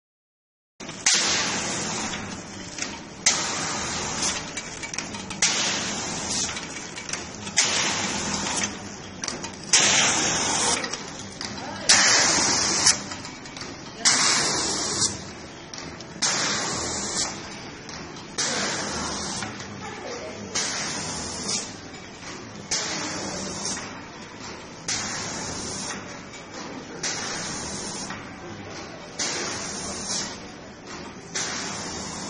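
Facial tissue soft-pack packaging machine running in a steady cycle: a sharp clack about every two seconds, each followed by a short burst of hiss, over a continuous machine hum.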